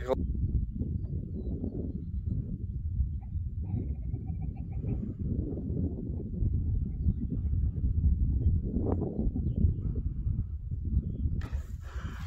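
Wind rumbling on a phone microphone on an open fell: a steady, muffled low rumble with no higher sounds.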